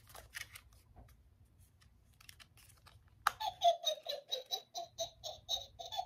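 Halloween witch-and-cauldron decoration cackling, a string of evenly spaced 'ha-ha' pulses about four a second that starts about three seconds in, after a few faint handling clicks.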